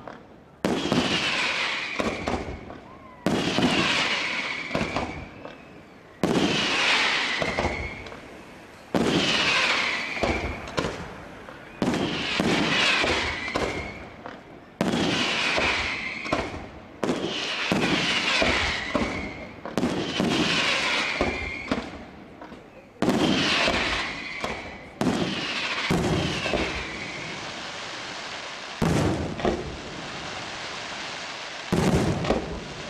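Daytime colored-smoke firework shells bursting in a steady series, a sharp bang every two to three seconds, each dying away in a rolling echo.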